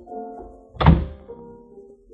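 A door shutting as a radio-drama sound effect: one heavy thud a little under a second in, over soft held musical chords.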